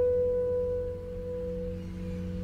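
Background music: a struck bell-like note rings on and slowly fades over a low, steady drone.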